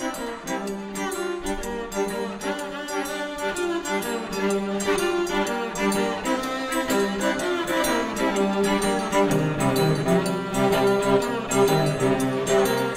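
Live acoustic duet of bowed viola and cello: the viola plays a quick melody over the cello, and lower cello notes join about nine seconds in.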